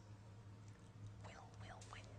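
Near silence: room tone with a low steady hum, and a faint, quiet voice about a second in.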